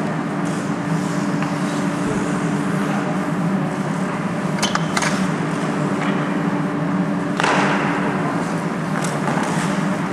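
Ice hockey rink sounds over a steady low hum: two sharp clacks about halfway through, and a hiss of skates scraping the ice about three-quarters of the way in.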